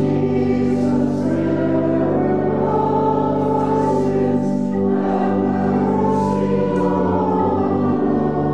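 Church choir singing a hymn or anthem, accompanied by pipe organ with steadily held chords.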